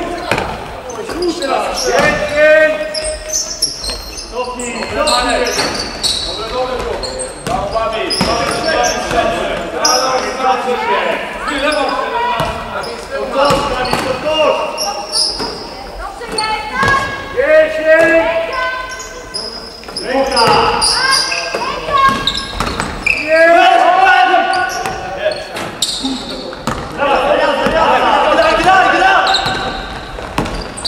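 A basketball bouncing on a wooden gym floor amid players' voices calling out, echoing in a large sports hall.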